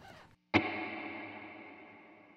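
Electric guitar chord struck once about half a second in through a Strymon BigSky set to a plate reverb, ringing out and fading slowly in the reverb tail.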